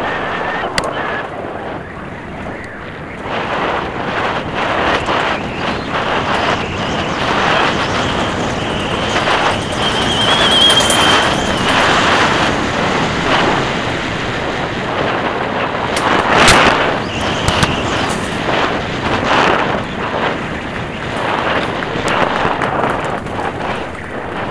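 Mountain bike descending a forest trail at speed over dirt and gravel: constant tyre rumble and rattling knocks from the bike over rough ground, with wind on the microphone. A brief high squeal sounds about ten seconds in.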